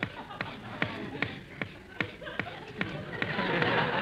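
Comic radio sound effect of slicing an orange, given as laboured, rhythmic cutting strokes about two and a half a second. Studio audience laughter swells near the end.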